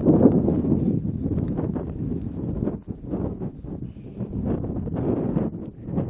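Wind buffeting the camera microphone in gusts, a heavy low rumble that eases for a moment about three seconds in, with soft scattered knocks from walking on grass.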